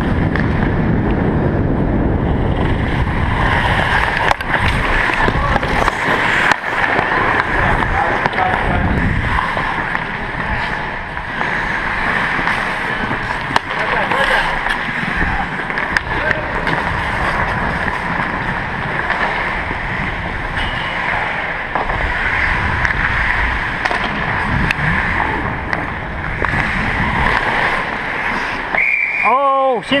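Ice hockey skates scraping and carving on rink ice as the skater wearing the camera moves, under a steady heavy rushing of air over the microphone. A few sharp clacks, typical of sticks hitting the puck or boards, stand out above it.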